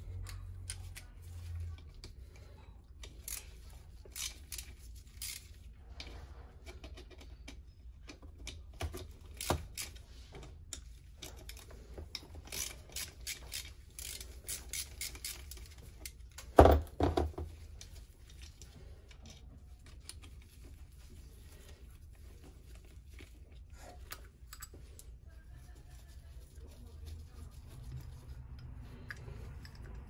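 Ratchet wrench clicking in runs as the bolts of a two-stroke engine's power valve cover are undone, with scattered small metal clinks and taps and one louder knock about two-thirds of the way in.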